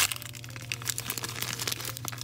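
Thin plastic blind-bag packaging crinkling and crackling in a quick, irregular run as fingers open it and dig out the small toy figure inside.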